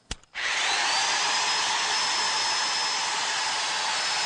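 Electric hand drill: a sharp click, then the motor spins up, its whine rising for a moment before it runs steady at full speed.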